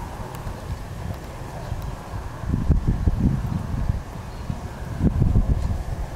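Mare and foal walking on a sand arena, their hooves making soft, irregular low thuds that come thickest in two spells, around the middle and near the end.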